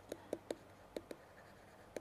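A pen writing by hand on a sheet of paper: faint strokes with a few light ticks as the pen touches down.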